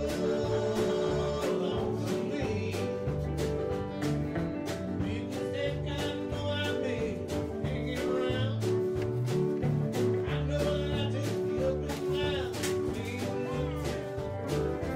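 Live country band playing a song: a man singing over a Hammond SK1 keyboard, with drums keeping a beat.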